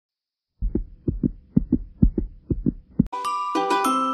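Heartbeat sound effect: a double thump about twice a second, starting after a brief silence. About three seconds in it cuts off and music begins.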